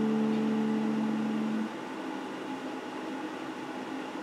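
Electric guitar chord left to ring and dying away, its last low note fading out about a second and a half in, followed by a faint steady background hiss.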